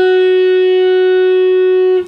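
Electric guitar, tuned down a half step, holding a single note fretted at the 8th fret of the B string (an F sharp). The note is held at a steady pitch and level without vibrato for about two seconds.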